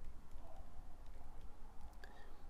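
Quiet room tone with a steady low hum and a few faint ticks from a stylus writing on a tablet screen.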